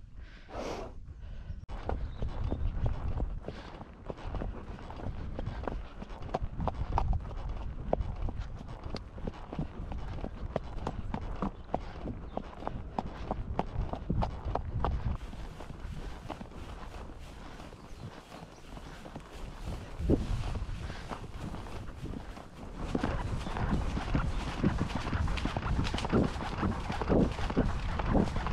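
A horse's hoofbeats, heard from on its back as it is ridden along a dirt and grass farm track: a steady run of dull clip-clops.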